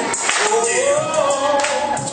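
Live singing into microphones over a backing track: a sung melody with long, gliding held notes and percussion behind it.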